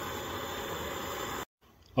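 Coleman Peak 1 camp stove burner running with a steady hiss under a pot of water near the boil. The sound cuts off suddenly about one and a half seconds in.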